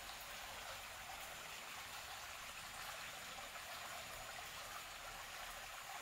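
Faint, steady rush of a flowing forest stream.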